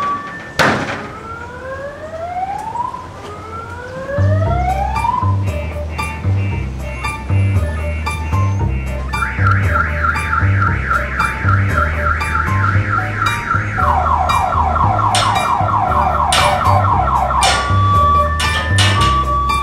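Comic film soundtrack: a knock just under a second in, then three rising whistle-like glides, then electronic music with a pulsing bass line and a fast warbling synth tone that drops lower about fourteen seconds in.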